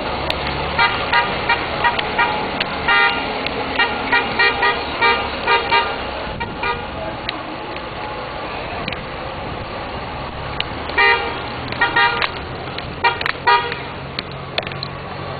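A horn tooting in strings of short pitched blasts, one run in the first half and another near the end, over a steady low engine hum.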